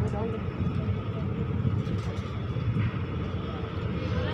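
Indian Railways passenger coach running slowly on the track: a steady low rumble of wheels and running gear, heard from the coach doorway, with faint passenger voices in the background.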